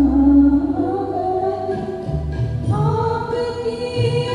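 Singing voices holding long, gliding notes in a slow song over a low bass accompaniment.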